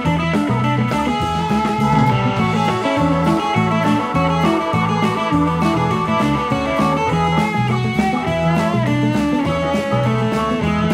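Live rock band playing an instrumental passage: electric guitar lead over a bass line and drum kit, with a steady driving beat.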